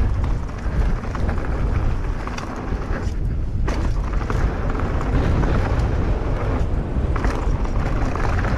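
Wind rushing over a point-of-view camera's microphone on a mountain bike riding downhill, with tyres rolling and crunching over dirt and gravel and small clicks and rattles from the bike. The sound is steady and loud throughout, with a heavy low rumble.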